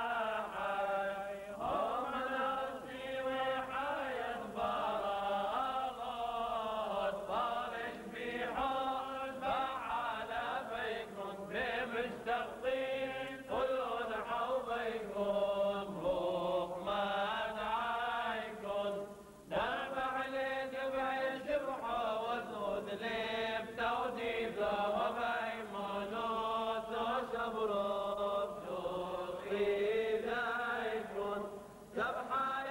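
Male clergy chanting together from liturgical books in a Syriac Catholic Mass, one flowing melodic line sung without a break.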